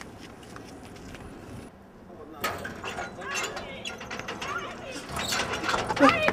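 Faint steady background noise, then after a short break about two seconds in, quiet voices and scattered clicks that grow louder toward the end.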